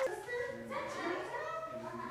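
Overlapping voices of a small group talking and calling out over one another, with background music.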